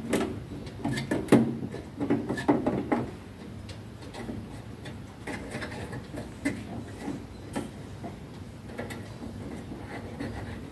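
Clicks and knocks from hands working on a changeover switch's terminals, wiring and metal enclosure. The knocks are sharpest and most frequent in the first three seconds, then give way to lighter, scattered clicks.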